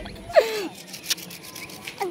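Scratchy rubbing and irregular clicks of a smartphone being handled against its microphone while it is repositioned. A short vocal sound is heard about half a second in.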